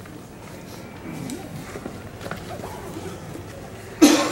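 Low background chatter of people in a room, with faint, indistinct voices.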